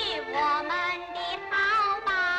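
A woman singing a pingju (Ping opera) aria line in a high, bright voice with sliding, ornamented pitch, over steady instrumental accompaniment.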